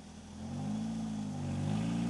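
A 1990 Ford Pony's engine revving: about half a second in, its pitch climbs, dips briefly, then climbs again.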